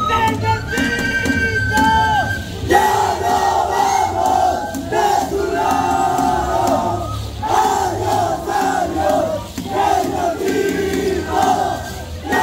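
Many voices chanting and shouting together in short repeated phrases, loud and dense, over a steady low drone. In the first couple of seconds a band's wind instrument holds steady notes before the chanting takes over.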